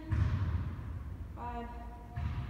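A woman's voice without words: a breathy, noisy stretch, then a drawn-out held vocal note from about one and a half seconds in.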